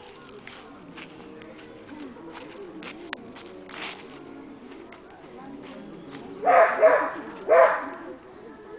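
Small dog barking: three short, loud barks close together near the end, over a faint background murmur.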